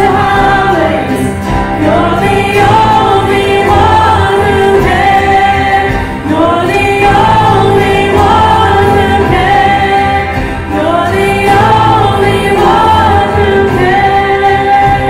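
A church worship team singing a gospel worship song together in several voices, with band accompaniment underneath.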